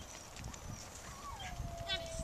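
Sheep hooves and a running corgi's feet drumming irregularly on loose dirt as the flock is pushed along. A little past halfway a long call begins, one drawn-out tone that slowly falls in pitch.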